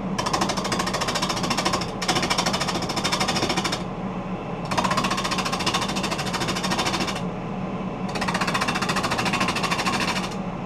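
Bowl gouge cutting a spinning holly bowl blank on a wood lathe. There are four passes of a fast, even rattle from the tool against the wood, broken by short pauses, over the steady hum of the lathe motor.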